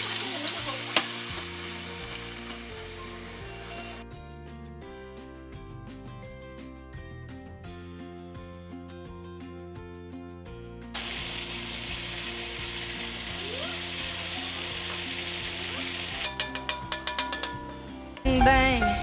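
Stir-fry food sizzling in a hot wok, with a spatula stirring and scraping against the pan. The sizzle is strongest at first, softens through the middle and picks up again, and a quick run of spatula clicks comes near the end.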